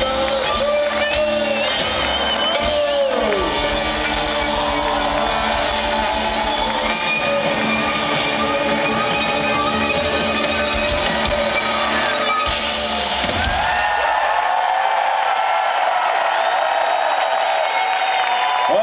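Live rock band with violin, saxophone, guitars and drums playing through a large outdoor sound system, with the crowd cheering. About thirteen seconds in the drums and bass stop, leaving long held notes over the crowd.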